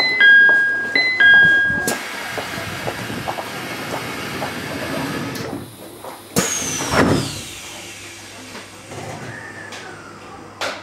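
Train door-closing chime, a two-note falling ding-dong sounded twice, followed by a steady hiss of a few seconds. A sharp knock and then a heavier clunk come about six and seven seconds in.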